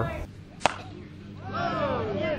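A single sharp crack of a bat hitting a softball, followed about a second later by several players' voices calling out across the field.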